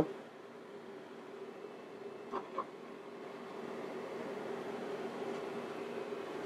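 Portable induction cooktop running under a stainless saucepan of heating olive oil: a faint steady hum with a light hiss that grows slightly louder.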